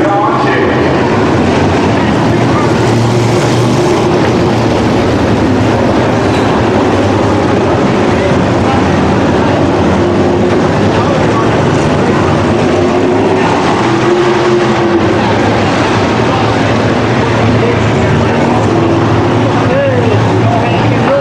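A field of sprint cars' V8 engines running at race speed on a dirt oval, heard as a steady, loud din of engine noise.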